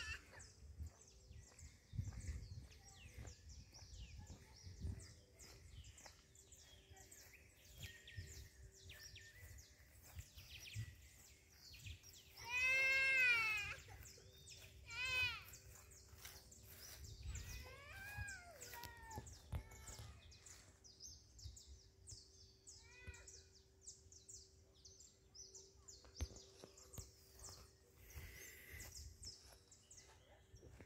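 Quiet outdoor ambience broken by a few high, drawn-out wailing calls. The loudest and longest comes about 13 seconds in, and shorter ones follow around 15, 18 and 23 seconds.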